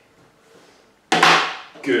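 A flat plastic counter set down sharply on a tabletop, one clack about a second in that rings briefly, followed by a man's spoken "good".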